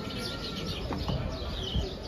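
Small birds chirping, many short high chirps in quick succession, over a steady low background noise.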